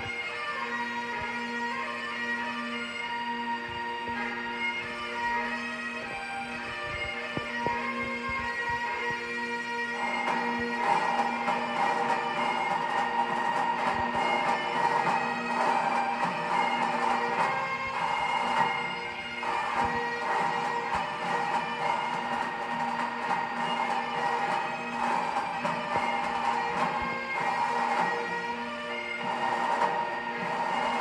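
Bagpipes playing: a steady drone under a chanter melody, which becomes louder about ten seconds in.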